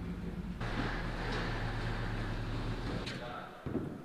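Truck engine running as it pulls a trailer into the shop, shutting off about three seconds in.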